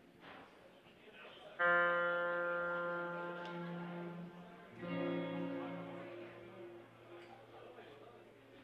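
Guitar played twice between songs, about a second and a half in and again near five seconds. Each is a single sharply struck pitched sound that rings and slowly fades; the second has a lower note added.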